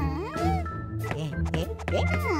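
A cartoon character's wordless, sing-song taunting vocal sounds, the pitch swooping up and down, over steady background music.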